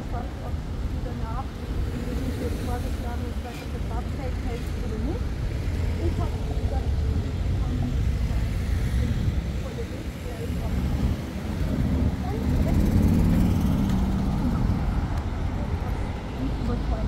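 City street ambience: a steady low rumble of road traffic, with passersby talking indistinctly. The traffic swells louder for a couple of seconds near the end.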